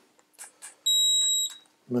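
A single high-pitched electronic beep from a test instrument, one steady tone lasting about two-thirds of a second, a little before the middle, with a few faint handling clicks just before it.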